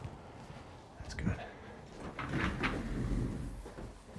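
Handling noises around a chiropractic table: a sharp click about a second in, then short scrapes and a low rumble as a rolling stool is pulled into place.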